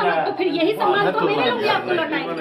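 Speech only: a woman speaking Hindi heatedly, with other voices chattering behind her.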